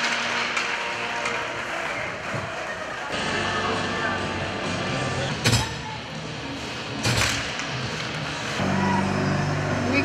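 Ice-rink arena sound: crowd noise with music during the team lineup, then, after a change of scene, the sounds of a women's ice hockey game at a faceoff, with two sharp impacts from the play about a second and a half apart, followed by a steady low hum.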